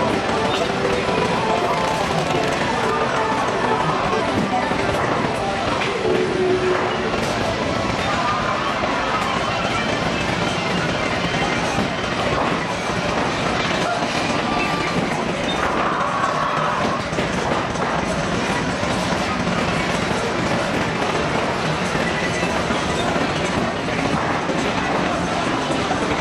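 Steady din of a busy, crowded venue: overlapping indistinct chatter with background music and a constant rumble.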